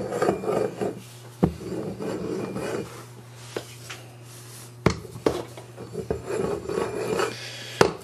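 Rolling pin worked back and forth over the rim of a metal deep-dish pizza pan, rubbing and rasping as it presses the dough against the edge and cuts it off evenly. Three sharp knocks come about a second and a half in, about five seconds in, and near the end.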